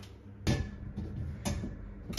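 Two short metal clicks about a second apart as BOAXEL wall rails and shelf parts are handled and unhooked from the wall, over a low steady hum.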